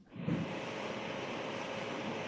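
Steady hiss of background noise from an open microphone on a video-call line. It comes in a moment after a brief dropout.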